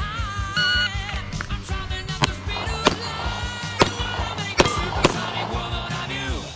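Background music throughout. From about two seconds in, about five handgun shots crack out at uneven spacing over it.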